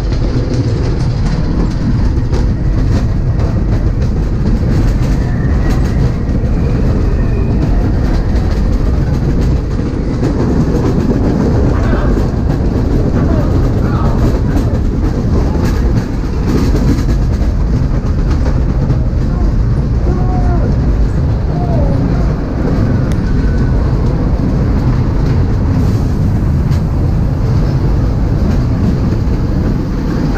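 Dark-ride car rolling along its track: a steady, loud low rumble with rattling from the wheels and car.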